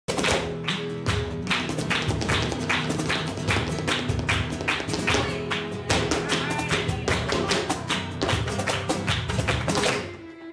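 Flamenco performance: a dancer's shoes striking the floor in rapid stamping footwork (zapateado), several sharp strikes a second, over flamenco guitar.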